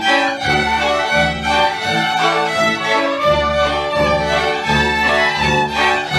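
Folk string band playing a tune together: several fiddles over cello and a bowed double bass. The bass notes come in a regular pulse underneath.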